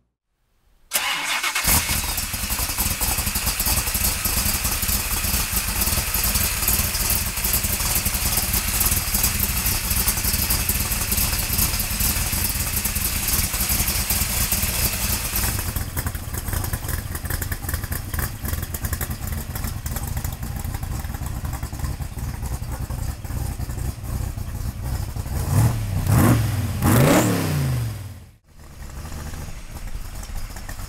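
Roush 402R V8 with side-exit exhaust pipes, running steadily at low revs. It is revved up and down twice near the end, just before the sound briefly cuts out and comes back.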